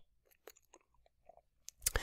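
Pause in a close-miked voice recording: a few faint, short mouth clicks and lip smacks spread through it, then a sharper click and a breath drawn in near the end.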